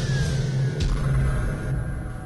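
Produced logo-intro sound design: a low rumbling drone under a falling swoosh-like tone that settles in the first second, with a short whoosh hit about a second in, easing off near the end.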